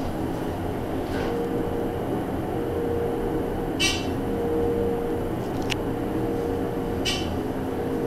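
Dover hydraulic elevator car travelling upward: a steady running hum with a faint steady whine. Two short hissing swishes come about four and seven seconds in, and a sharp click comes between them.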